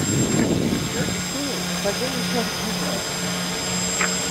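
Small electric RC multi-rotor hovering: a steady whir of its motors and propellers with a constant high whine.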